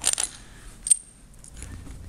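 Small steel parts of a mill stock stop clinking against each other as they are taken apart by hand: a few sharp clinks at the start and a single ringing metal clink about a second in.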